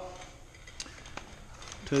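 Low background noise with a couple of faint light clicks about a second in, from parts or tools being handled.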